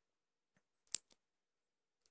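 Dead silence broken by a single sharp click about halfway through, with two much fainter ticks just before and after it.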